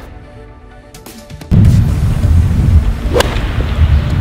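Background music ends, then loud wind buffeting the microphone, and about three seconds in a single sharp crack of a golf club striking the ball on a tee shot.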